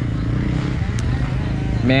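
Honda XR600R's air-cooled four-stroke single idling steadily with a low, even running note.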